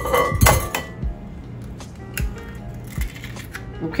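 An egg cracked on the rim of a glass mixing bowl: a sharp knock about half a second in, then a few fainter knocks and clinks.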